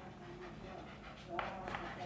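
Chalk writing on a blackboard: faint scratches of the strokes, with a few short ones near the end.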